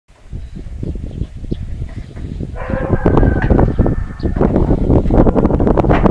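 One long animal call lasting about a second and a half, starting about two and a half seconds in, over clatter and a low rumble.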